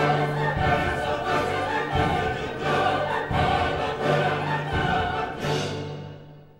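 Opera chorus and orchestra performing live: the choir sings over low orchestral notes that recur about once a second, and the music dies away near the end.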